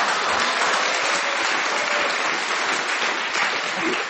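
Studio audience applauding and laughing steadily for several seconds, a sustained wash of clapping.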